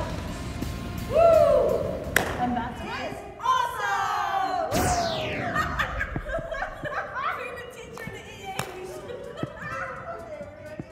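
Women laughing and calling out in a large echoing gym, then music comes in with a steep falling swoop about halfway through.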